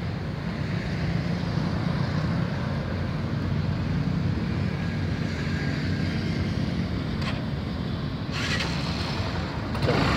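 Steady road traffic noise from vehicles passing on the road, a low rumble throughout with a brief brighter hiss about eight and a half seconds in.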